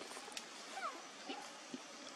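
Faint macaque calls: a few brief sounds that slide up and down in pitch, over a steady background hiss.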